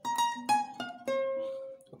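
Acoustic guitar picked in single notes: four plucked notes stepping down in pitch, the last held and left ringing for nearly a second. They are a highlife solo lick played in a new fretboard position.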